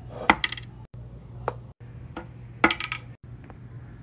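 Small hard-wax beads dropping into an empty aluminium wax-warmer pot, clinking and pinging off the metal in three short groups, over a faint low hum.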